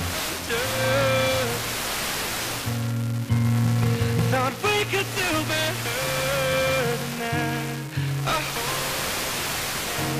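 A pop song coming through an SDR tuned to an 87.9 FM pirate station, in a stretch between sung lines. A steady static hiss from the weak signal lies over the music.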